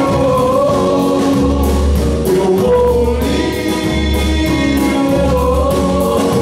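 Live band performance with a male lead singer: long, held sung notes over deep bass notes lasting about a second each, with cymbals.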